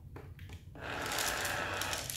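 Treat & Train remote treat dispenser running its motor and rattling kibble into its tray. The whirring rattle starts about three-quarters of a second in and lasts just over a second, after small clicks from the puppy eating at the plastic tray.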